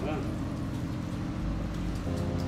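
Background music with steady, sustained low tones.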